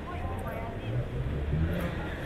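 Street ambience with a motor vehicle's engine rising in pitch and growing louder around the middle, over a low rumble and faint voices of passers-by.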